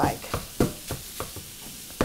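A meat chopper tool jabbing and scraping through raw bulk sausage in a nonstick frying pan, breaking it into fine crumbles, in short strokes about three a second.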